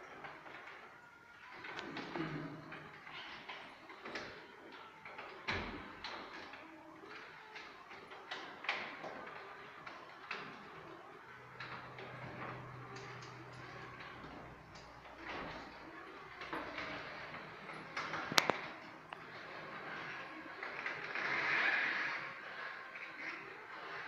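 Caterwil GTS3 tracked stair-climbing wheelchair going down a flight of stairs, with irregular clunks and knocks as it comes down. A low hum joins for a couple of seconds about halfway, and one sharp click comes about three-quarters through.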